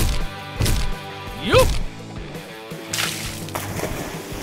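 Background music under cartoon fight sound effects: two short hits in the first second, then a wet splat effect about three seconds in.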